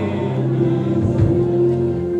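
Voices singing a gospel song together, holding a long note, with a low thud about a second in.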